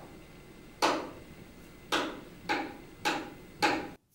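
Sharp percussive clicks counting the band in before the song: two about a second apart, then three quicker ones about half a second apart, each ringing briefly.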